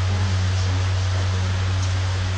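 A steady low hum with an even hiss over it, holding level throughout, with no speech.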